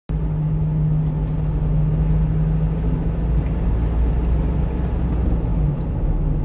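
1-ton refrigerated box truck driving on a road: steady low engine and road rumble, with a low hum that fades about halfway through.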